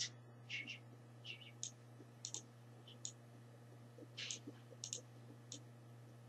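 Faint, irregular clicks, about ten of them, some in quick pairs, over a steady low hum.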